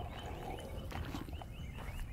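Faint footsteps crunching on a gravel path over steady outdoor background noise.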